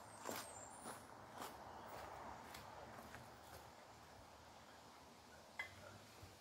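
Faint footsteps crunching on gravel, about two steps a second, stopping about three and a half seconds in. A single short knock comes near the end.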